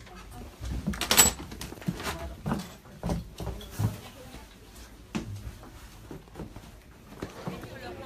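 Land train passenger carriage rattling and clunking as it rolls along the road, over a low rumble, with irregular sharp knocks, the loudest about a second in.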